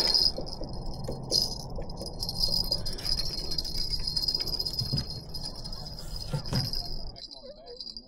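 A steady high-pitched insect drone, such as cicadas or crickets, that fades out about seven seconds in, with a few soft knocks from handling fishing gear on the dock.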